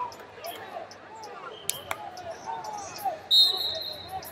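A referee's whistle blows once near the end, a steady shrill tone and the loudest sound here, starting a wrestling bout. Around it, wrestling shoes chirp and squeak on the mats, with distant voices in a large hall.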